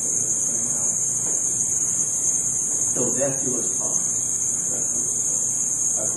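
Steady high-pitched hiss from an old home-video recording runs under everything, with a soft voice speaking briefly about three seconds in.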